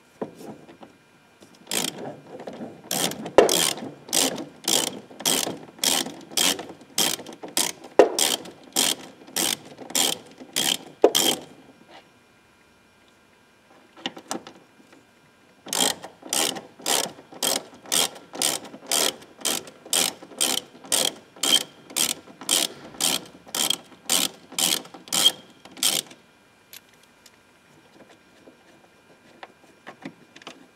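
Hand ratchet clicking in steady runs, about three clicks a second, as screws are undone. There are two runs, one for each screw, the second starting about four seconds after the first stops.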